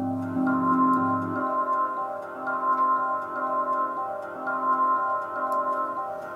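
A sustained, organ-like drone chord, synth-like but triggered by the drums: a drum loop fed through a convolution reverb on a drone-tone impulse. The lowest notes drop out a little over a second in as the low end is EQ'd away to brighten it.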